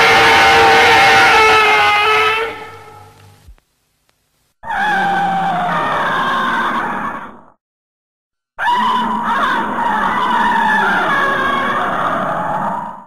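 Gamera's roar sound effect from the Showa-era Daiei films, heard three times with short silences between. Each roar is a pitched cry a few seconds long. The first is already under way and fades out about three seconds in, the second runs from about five to seven and a half seconds, and the third starts near nine seconds and carries on past the end.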